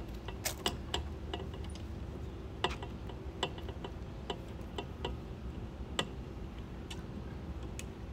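Irregular clicks and taps as camera-rig clamps and fittings are handled and worked onto a carbon-fibre rig pole, about a dozen sharp ones unevenly spaced, over a low steady rumble.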